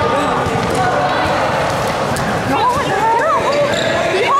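Basketball game sounds on a court: a basketball bouncing amid players' voices shouting and calling, with wavy squealing sounds in the second half as play gets going.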